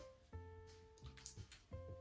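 Quiet background music of plucked string notes: a new note about a third of a second in and another near the end, each ringing and fading.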